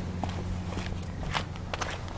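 A few soft, irregular footsteps on concrete over a steady low hum.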